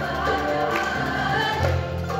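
A qanun orchestra, many qanuns plucked together with cello, percussion, bass guitar and piano, accompanying a choir singing.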